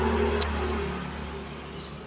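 Low engine rumble of a passing motor vehicle, loudest at the start and fading away, with a small tick about half a second in.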